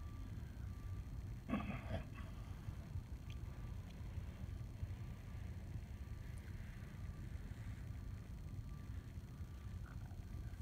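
Faint strokes of a three-inch paintbrush laying latex paint onto a wall, over a low steady hum, with one short sound about a second and a half in.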